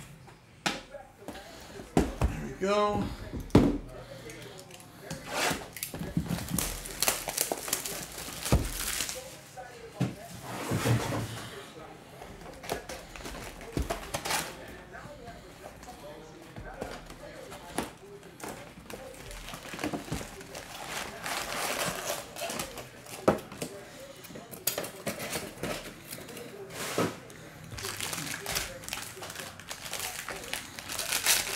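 A cardboard trading-card hobby box being opened and its foil-wrapped card packs taken out and set down on a table: scattered knocks and thuds of cardboard and packs, with crinkling of the foil wrappers.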